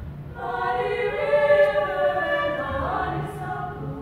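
High school girls' choir singing in harmony. The voices drop away briefly just after the start, then come back in and swell to their loudest around the middle, with a pitch slide near the three-second mark.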